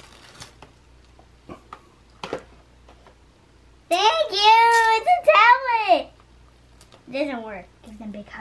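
A young child's excited, high-pitched cries, a couple of drawn-out rising-and-falling calls about four seconds in, with a shorter call a second later. Before them, a few faint clicks as the cardboard box is handled.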